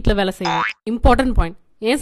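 Conversational speech with a short rising springy 'boing' comedy sound effect about half a second in, then a brief pause.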